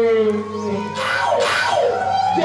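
Live stage music and voice of a folk-theatre performance over a loudspeaker system: a held note fades, then two short hissy crashes come about a second in and again half a second later.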